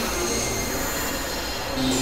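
Experimental electronic noise music from synthesizers: a dense, hissing wash with thin, high, sustained squealing tones over it. A lower held tone comes back in near the end.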